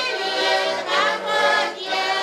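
Women singing a folk song together to several small button accordions.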